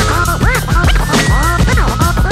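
Turntable scratching over a hip-hop beat: rapid back-and-forth record scratches, each sweeping up and down in pitch, over a steady bass line.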